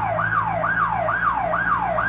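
Electronic siren in a fast yelp, its pitch sweeping up and down about twice a second, over a steady low hum.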